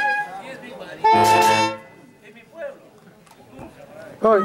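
A brass band's held chord cuts off at the start; about a second in comes one loud, steady horn-like blast lasting under a second, followed by faint voices.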